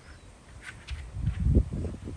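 A surfboard pop-up: hands and bare feet scuff and thump on the board as the child springs from lying to standing, with a short scrape early on and low thuds loudest about a second and a half in.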